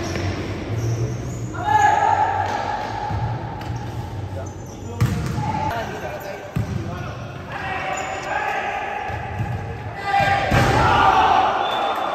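A futsal ball being kicked and bouncing on a hard indoor court, the knocks echoing in a large gym hall. Players are shouting throughout, loudest near the end.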